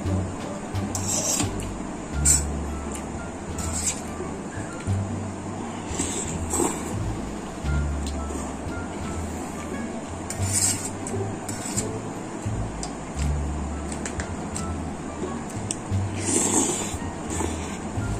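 Background music with a low bass line changing every second or two. Over it come a dozen short, scattered eating sounds: a metal fork scraping a baking tray and spaghetti being slurped.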